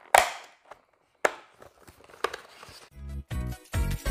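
Plastic clamshell fruit container being opened: three short crackling snaps of plastic packaging. About three seconds in, background music with a steady beat starts.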